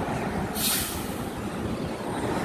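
Steady low outdoor background rumble, with a short hiss a little over half a second in.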